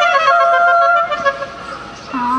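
Saxophone playing a phrase that ends on a long held high note. The note breaks off about a second in, leaving a quieter tail.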